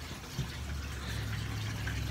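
Aquarium filters running beside a fish tank: a low steady hum under faint running water.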